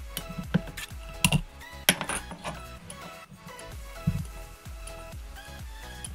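Background music with a few sharp metallic clicks and clinks in the first two seconds and one softer one later: a steel exhaust spring being hooked onto the header of a nitro RC engine with a wire spring hook.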